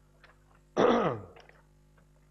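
A man clears his throat once, about a second in: a short, loud rasp that falls in pitch.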